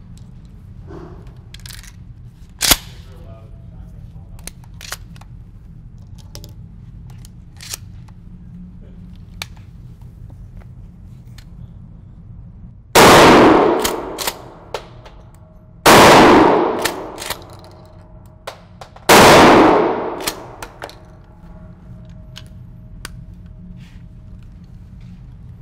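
Remington 870 pump-action shotgun fired three times, about three seconds apart, each blast ringing out in the reverberant indoor range. Short clicks follow each shot as the pump is worked, and there is a single sharp click earlier on.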